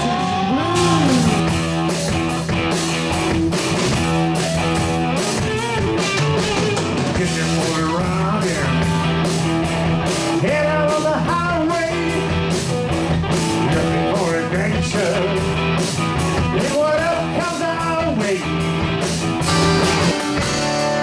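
Live rock band playing electric guitars, bass and drum kit, with a lead part that bends up and down in pitch over a steady beat.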